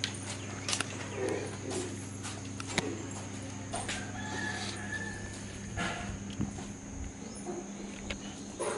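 Footsteps and knocks as a metal yard gate is passed through and shut, heard as scattered clicks and thumps over a steady low hum and a faint steady high whine.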